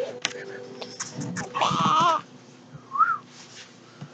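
A baby's high-pitched vocalising: a long, wavering squeal about halfway through, then a short rising-and-falling squeak near the end.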